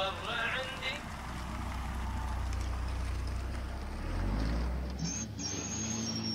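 Vehicle engine idling: a steady low rumble that swells briefly about four seconds in, then cuts off near the end.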